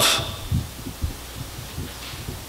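Faint steady room hum with a few soft, low thumps, about half a second and a second in, picked up by a lectern microphone during a pause in speech.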